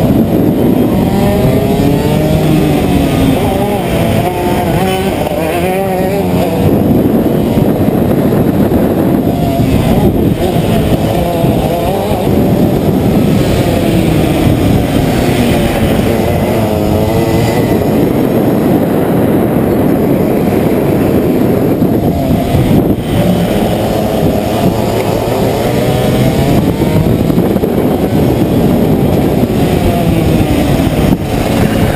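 Racing kart engines running hard, heard from onboard: the engine note rises and falls over and over as the kart accelerates and lifts off, with several engine notes overlapping from karts close by.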